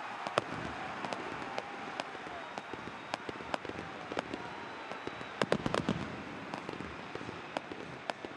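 Fireworks and firecrackers going off over a stadium crowd: scattered sharp cracks over a steady crowd noise, with a quick run of bangs a little past the middle.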